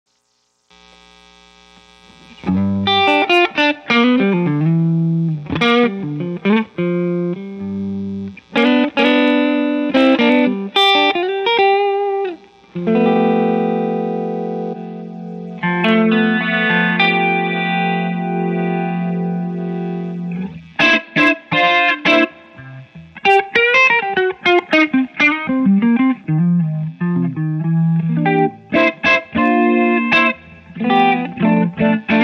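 Electric guitar, a Gibson Les Paul, played through a Korg G4 rotary speaker simulator pedal into a Jim Kelley amp: picked chords and short phrases begin a couple of seconds in. Around the middle a long held chord wavers with the pedal's rotary swirl before the choppy phrases resume.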